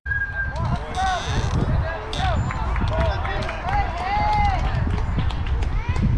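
A youth baseball bat striking the pitched ball, a sharp crack with a short ringing tone. It is followed by spectators and players shouting and cheering as the batter runs.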